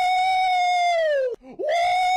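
A man's long, high-pitched held scream that breaks off about two-thirds of the way through and starts again at once at the same pitch, like the same scream played twice.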